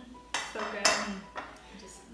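Metal forks clinking and scraping on a plate as salad is picked up: three sharp clinks, the middle one the loudest.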